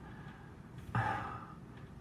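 A man's single breath, drawn once about a second in during a short pause in his talk; otherwise quiet room tone.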